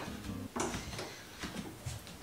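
Quiet room sound with a faint hinged closet door swinging open and a couple of small ticks.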